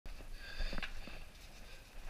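A caver's close breathing, with a few knocks and scuffs of footsteps on the rock of a lava tube.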